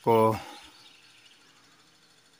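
A man's voice ends about half a second in, followed by near silence with only a faint background hiss.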